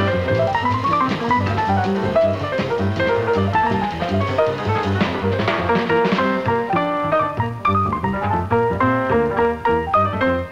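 Jazz piano trio playing: rapid acoustic piano runs that sweep down and then back up, over plucked upright bass and a drum kit with cymbals.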